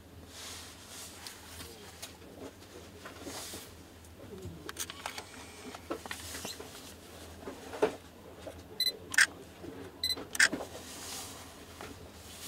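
Sony Cyber-shot RX100 II compact camera being handled in gloved hands: soft rubbing and small clicks of its controls. Near the end, twice, a short electronic beep is followed a moment later by a sharp click, typical of the focus-confirm beep and shutter release.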